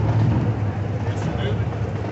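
Classic Chevrolet Corvette convertible's V8 engine running at a slow parade crawl as it passes, a steady low engine note.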